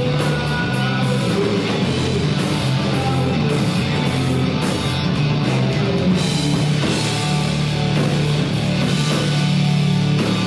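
Live rock band playing a passage with no words sung: electric guitars, electric bass and a drum kit, loud and steady.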